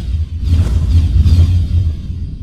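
Intro sound effects: a deep, steady rumble with whooshes sweeping over it.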